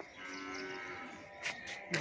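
A faint, steady pitched call lasting about a second, holding one pitch, followed by a short tick about one and a half seconds in.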